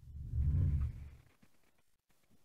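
Deep, low bass boom of a logo intro sting, loudest within the first second and fading out by about a second and a half in.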